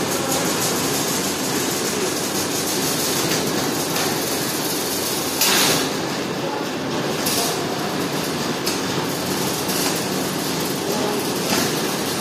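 Steady whirring of running machinery, with a brief louder clatter about five and a half seconds in.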